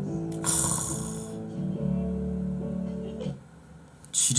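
Two women's voices singing held notes together in harmony, with a short loud hissing burst about half a second in. The singing stops suddenly a little after three seconds.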